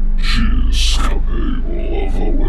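A deep, heavily effect-processed voice speaking, with sharp hissed consonants, over a steady low drone.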